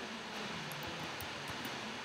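Room tone: a steady, quiet background hiss with a faint low hum and a few faint high ticks.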